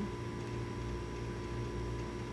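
Steady low electrical hum with light hiss and a faint thin steady tone, no other sound: the recording's background noise in a pause between words.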